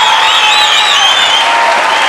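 Studio audience applauding, with high wavering whistles over the clapping in the first half.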